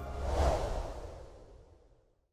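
Whoosh sound effect for an intro transition: a noisy swish swells to a peak about half a second in, then fades away to silence.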